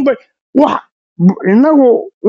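Speech only: a person talking in short phrases, with brief pauses between them.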